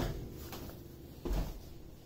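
A few dull clunks of wood: a short knock at the start and a louder, deeper thump about a second and a third in.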